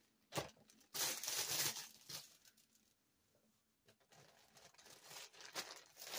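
Packaging rustling as the next item is handled and unwrapped: a click, then a burst of rustling about a second in, a quiet stretch in the middle, and rustling again building toward the end.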